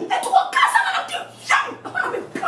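A woman's raised, agitated voice in rapid speech.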